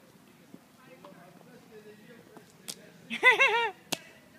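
A toddler's short, high-pitched vocal squeal with rising and falling pitch near the end, the loudest sound, followed by a sharp slap as she stamps her foot into a shallow puddle on asphalt.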